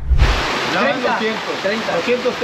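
Heavy rain pouring down in a steady hiss, with men's voices talking over it. A brief low thump comes at the very start.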